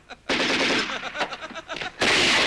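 Submachine gun fire: after a brief pause, a long rapid burst of shots, then spaced single shots and short bursts.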